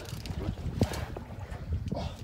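Wind buffeting the microphone on an open boat, a steady low rumble, with a couple of short knocks from handling the rod and gear.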